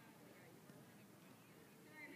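Near silence: faint outdoor background.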